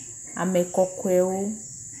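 A voice speaking a short phrase from about half a second in, over a steady high-pitched whine in the recording.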